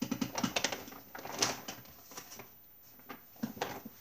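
Hands handling a crocheted piece and its tools on a table: a run of light clicks and rustles in the first second and a half, a sharper click partway through, and a few more near the end.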